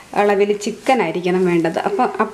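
A voice talking, with soft stirring and sizzling from a wooden spatula turning a chicken-and-potato cutlet mixture in a frying pan underneath.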